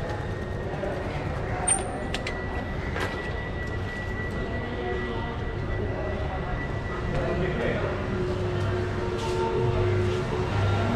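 Indistinct voices over a steady background hum, with a thin, steady high tone held for several seconds in the middle.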